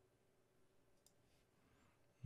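Near silence: faint room tone, with one faint click about a second in.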